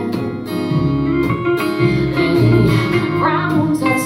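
A live country band playing: electric guitar over a strummed acoustic guitar and upright bass, with a short bent note about three seconds in.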